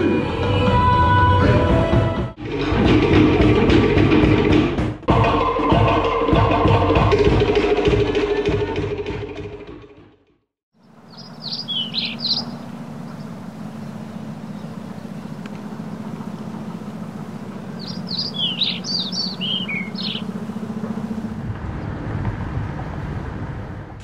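Cook Islands drumming with singing: fast, dense drum beats under voices. It fades out about ten seconds in. A steady low background follows, with birds chirping in two short bursts.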